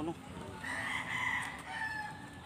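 A rooster crowing: one long call that starts about half a second in and drops slightly in pitch as it ends.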